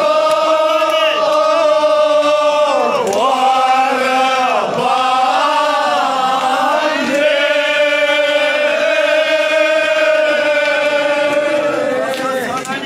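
A crowd chanting loudly in unison, holding long drawn-out notes whose pitch dips and rises again a few times.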